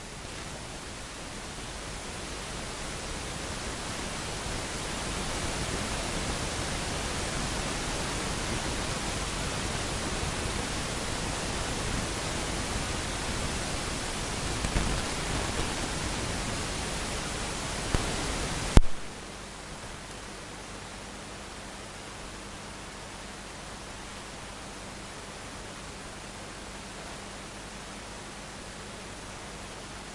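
Steady hiss that swells over the first few seconds, then cuts off abruptly about two-thirds of the way through, leaving a quieter hiss with a faint low hum.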